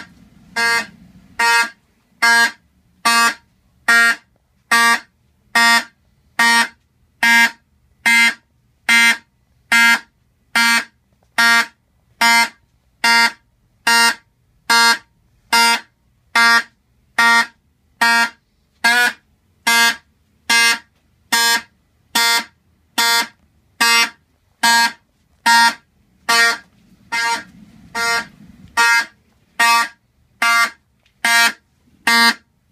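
Vibratone 450 12-volt horn on a 1970s Fire-Lite fire-alarm light, buzzing in short even pulses about one and a half times a second. A thermal car turn-signal flasher switches it on and off, so the horn pulses in step with the blinking light.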